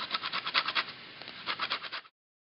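A lime being zested on a grater: rapid rasping strokes in two runs, with a short pause between them.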